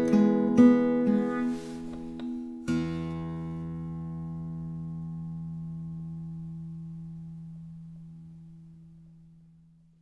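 1949 Gibson LG-1 acoustic guitar played fingerstyle: a few last picked notes, then a final chord about three seconds in that is left to ring and slowly fades away.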